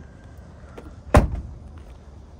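A car door of the 1999 Honda Accord wagon being shut: one solid slam a little past a second in.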